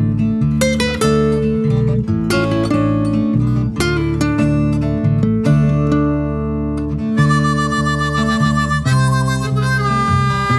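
Instrumental break in a country song: acoustic guitar with harmonica. From about seven seconds in, the harmonica plays a fast warbling trill.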